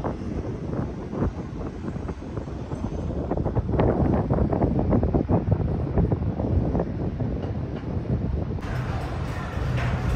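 Wind blowing across the microphone in gusts, a rumbling buffet that grows stronger through the middle and eases near the end.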